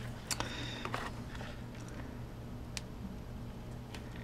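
Faint handling noise, a few light clicks and rustles, as a small LED bulb on clip leads is picked up and moved, over a low steady hum.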